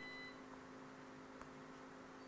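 Near silence: a steady low electrical hum, with a short faint beep right at the start and a couple of faint clicks.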